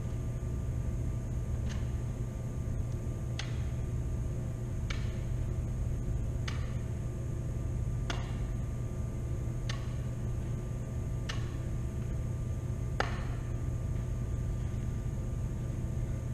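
A bean bag flipped up and caught on a table tennis paddle, landing with a faint tap about every second and a half, eight times, while flips alternate between forehand and backhand. A steady low hum runs underneath.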